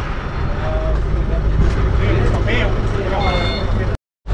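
A steady low rumble with brief snatches of voices over it. It cuts off suddenly at the end.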